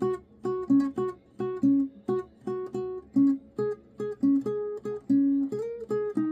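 Acoustic guitar played as a single-note melody high on the neck: separate plucked notes, two to three a second, in a steady rhythm, with a short slide up in pitch near the end.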